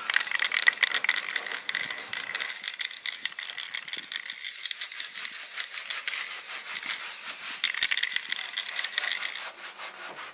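Aerosol spray paint can in use: the rattle of its mixing ball as it is shaken and the hiss of paint spraying onto metal tin cans. The rattling is busiest at the start and again near the end. A rasping scrape of hand sanding runs underneath.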